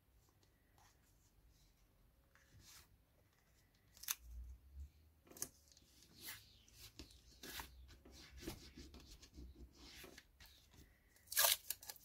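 Masking tape and paper being handled: a strip of masking tape taken off and pressed down onto card, with scattered light rustles and clicks. Nearly silent for the first few seconds.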